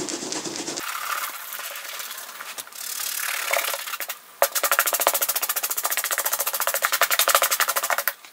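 A brush scrubbing the suede leather of a cowboy boot: a few seconds of rubbing, then a fast, even run of short strokes, about ten a second.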